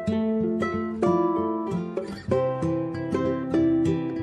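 Background music on a plucked guitar: a steady run of picked notes, with a short dip about two seconds in before lower notes join.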